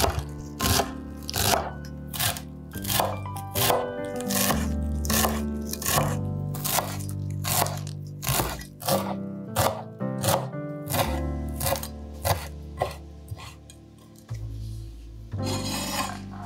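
Chef's knife chopping fresh parsley on a wooden cutting board: a steady run of crisp strokes, about two to three a second, over background music.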